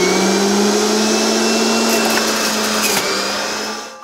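Electric centrifugal juicer running at full speed with a steady whine while yellow bell pepper is pushed through it, winding down near the end.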